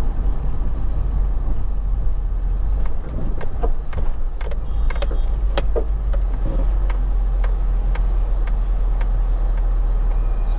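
Steady deep rumble of a car driving, heard from inside the cabin, with a scatter of small clicks and knocks a few seconds in.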